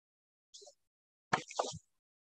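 A few short knocks and rustles in otherwise dead silence: a faint one about half a second in, then a louder cluster of sharp clicks near the end.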